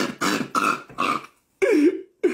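A man laughing heartily in a rapid run of short breathy bursts, about three a second, then a brief break and one last voiced laugh near the end.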